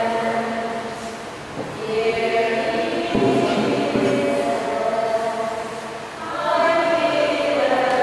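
Group of voices singing a slow hymn in long held phrases that fade and swell again twice. There is a single knock about three seconds in.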